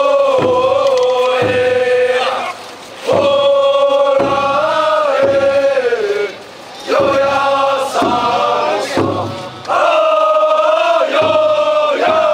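Many men's voices chanting in unison: four long held calls, each sliding down in pitch at its end, with short breaks between them. Low thuds come about once a second underneath.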